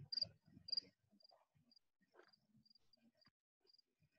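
Faint cricket chirping, short high chirps about twice a second, over near silence.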